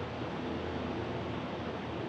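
Steady background noise of a large, empty factory hall: an even hiss with a faint low hum, no distinct events.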